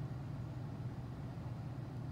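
Quiet room tone with a steady low hum and faint hiss; no distinct events.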